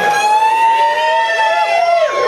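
A long, slightly wavering high note held by a voice, with a second, lower note joining in the second half, over a murmur of crowd.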